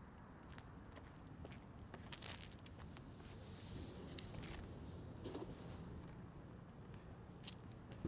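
Faint sound of a cast net being swung and thrown: scattered light ticks and crunches, with a brief soft swish about three and a half seconds in as the net opens and flies out.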